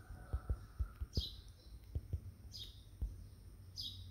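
Faint, irregular low thumps of fingers tapping a phone's touchscreen while typing. A bird's short, falling chirp repeats about every second and a half in the background.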